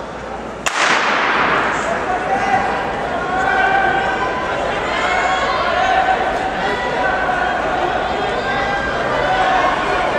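A starting gun fires once about a second in, its crack echoing through the indoor track arena, signalling the start of the race. Spectators then shout and cheer the runners on.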